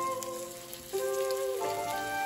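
Kimchi pancake batter sizzling and crackling in hot oil in a frying pan, under background music with a flute-like melody of held notes.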